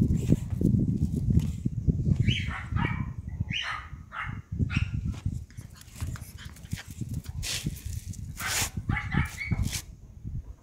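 Pug puppies giving short high-pitched whines and yelps, in bursts about two, four and nine seconds in. Under them runs a low rumble, loudest in the first couple of seconds.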